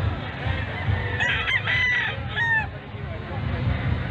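A rooster crows once: a call of several linked notes lasting about a second and a half, starting just over a second in, over a steady low background din.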